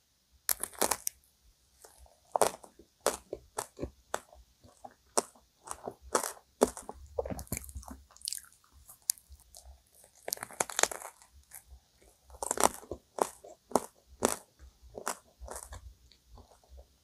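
Close-miked biting and chewing of a crème brûlée cream donut, its caramelized sugar top crunching at irregular intervals between softer chewing.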